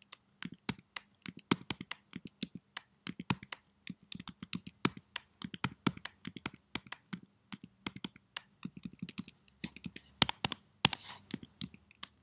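Computer keyboard keys being pressed in an irregular run of clicks, several a second, with a few louder clacks near the end.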